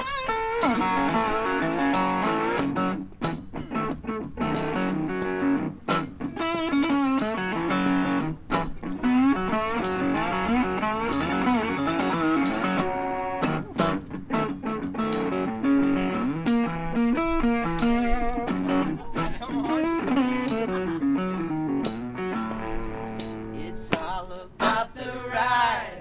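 Mule resonator guitar played live with bending notes, over a tambourine hit on a steady beat.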